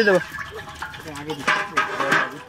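Voices talking, with a drawn-out cry that rises and falls right at the start, and a brief rushing hiss about a second and a half in.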